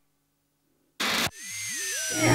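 About a second of near silence, then a short, loud burst of static-like noise, followed by an electronic swoosh whose pitch dips and climbs back as the television show's title music begins.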